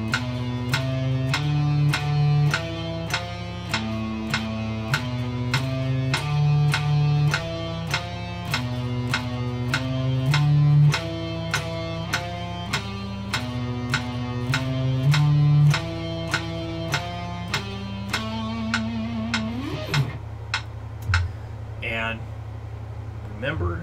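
Electric guitar playing a single-note exercise at 100 BPM, one note per beat, over a steady metronome click. The line ends about twenty seconds in on a held note followed by a rising slide.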